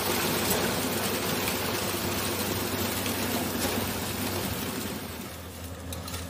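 A truck-mounted concrete pump running, with concrete pouring from the delivery hose into the column formwork: a steady rushing noise over a low engine hum, easing off about five seconds in.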